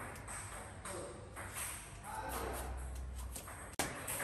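Quiet handling noise: soft rustles and a few light knocks as sweet potatoes are picked out of a plastic bag, with one sharp click near the end.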